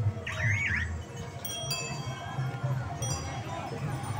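Bicycle bells on vintage onthel bicycles ringing in short dings that fade, about a second and a half in and again near three seconds. A quick warbling whistle-like sound comes just at the start.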